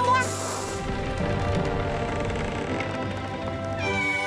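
Cartoon background music plays throughout. It opens with a brief hissing sound effect and carries wordless character vocal sounds.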